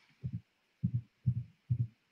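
Four faint, muffled low thumps about half a second apart, each a quick double knock, from a laptop being tapped and handled as it is worked to share the screen.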